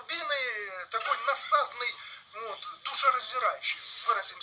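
A man speaking Russian, played back through laptop speakers: thin and tinny, with no low end.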